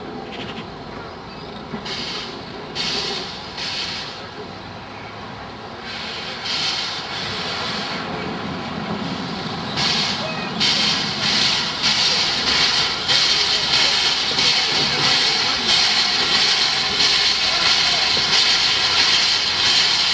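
Steam tank locomotive No. 32473, an LB&SCR E4 0-6-2T, drawing near at low speed with separate puffs of exhaust a second or so apart, growing louder. From about ten seconds in, a loud steady steam hiss takes over as the engine comes close underneath.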